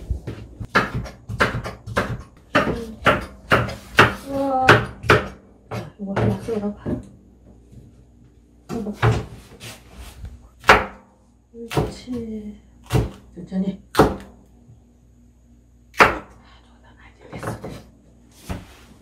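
Kitchen knife cutting vegetables on a cutting board: a run of sharp, irregular knocks as the blade strikes the board, with a pause of a second or two near the middle.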